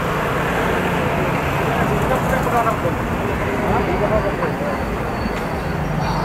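Busy street ambience: steady traffic noise from passing cars and motorbikes, with indistinct chatter of people nearby.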